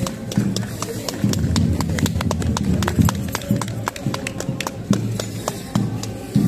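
Enburi festival music: voices chant in short rhythmic phrases, with a dense run of quick, sharp metallic clicks through the middle seconds.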